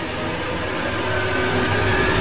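Sound effect of an animated outro: a dense, noisy whoosh that starts suddenly and swells steadily louder, with a faint rising tone in it.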